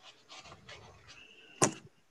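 Breathing and handling noise picked up by an iPhone's microphone on a video call, ending in one sharp, loud click about a second and a half in.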